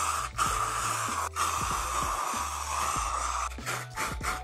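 Aerosol spray paint can spraying in a steady hiss, with brief breaks between passes.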